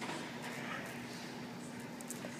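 Quiet room tone with a steady low hum and no distinct event.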